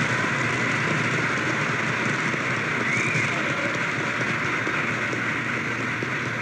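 Audience applauding steadily after a line in a speech.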